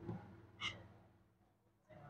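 A woman's short, faint breath or sigh about half a second in, over quiet room tone.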